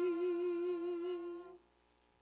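A singing voice holds the last note of a hymn line with a slight vibrato, then cuts off about one and a half seconds in, leaving a short pause before the next stanza.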